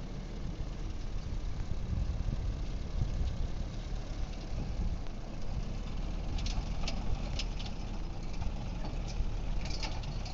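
Homemade tractor's engine, taken from an old Dacia car, running steadily with a low rumble. A few short sharp clicks come about two-thirds of the way through and again near the end.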